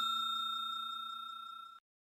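Notification-bell sound effect, a bell-like ding ringing out with a clear tone. It fades steadily and dies away shortly before the end.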